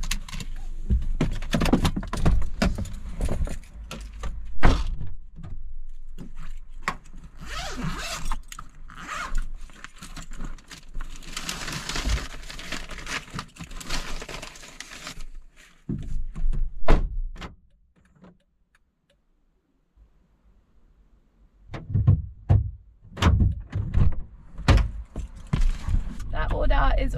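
Handling sounds in a parked car: clicks and thunks of a seatbelt and car doors, then a long stretch of rustling as a paper food bag is pulled from an insulated delivery bag on the back seat. A brief near-silent gap, then more knocks and thunks near the end as the driver gets back in.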